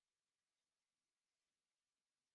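Near silence.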